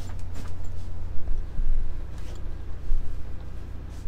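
Steady low rumble of an idling semi-truck heard inside the cab, with a few light clicks near the start.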